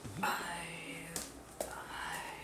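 A man's breathy, whispered voice for about a second, followed by two short clicks.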